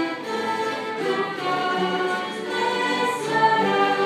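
Church orchestra with bowed strings playing a hymn, with voices singing along in held, sustained notes.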